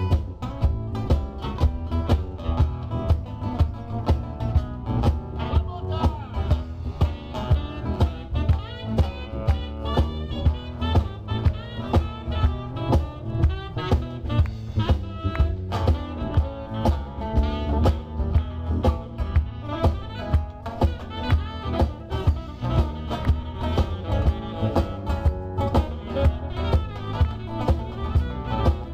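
Live blues band playing an instrumental passage: guitar over a drum kit keeping a steady beat, with a strong low end.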